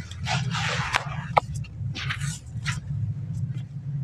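Handfuls of dry, powdery red dirt scooped and let fall in a basin, in a few short hissing pours, with small crumbly clicks. A steady low rumble runs underneath.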